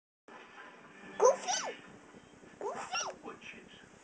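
A toddler's voice making two short, high-pitched vocal sounds that glide up and down, about a second and a half apart.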